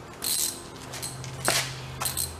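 A short rustle, then a single sharp click about one and a half seconds in, over a low steady hum.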